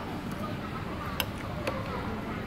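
Indoor food-court hubbub of background voices, with two sharp clinks of a metal spoon against a soup bowl, a little over a second in and again half a second later.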